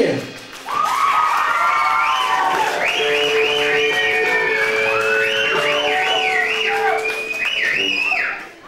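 Rock band playing live: after a full-band hit at the start, electric guitar lines swoop up and down in pitch over a held note.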